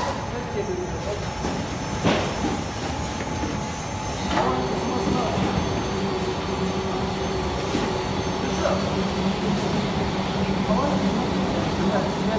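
Industrial bakery production line running with steady machine noise. There are two sharp knocks, and about four seconds in a steadier machine hum comes in.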